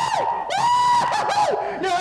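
Young men shrieking and yelling in high-pitched, drawn-out cries. The longest cry is held for about a second in the middle.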